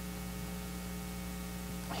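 Steady electrical mains hum with a faint hiss, unchanging throughout.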